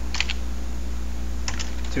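Typing on a computer keyboard: a couple of keystrokes just after the start and a quicker run of them near the end, over a steady low hum.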